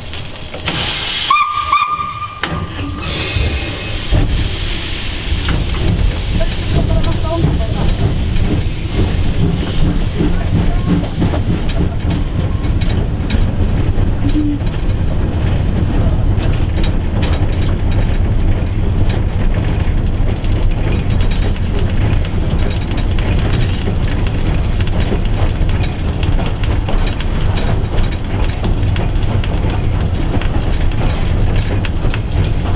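Cab of the SJ E 979 steam locomotive: about a second in, a short steam whistle blast over a rush of steam hiss. Then the locomotive runs on with a steady low rumble of running gear and wheels on rails.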